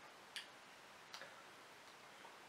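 Near silence: room tone with two faint, sharp clicks, the first about a third of a second in and the second just after the middle.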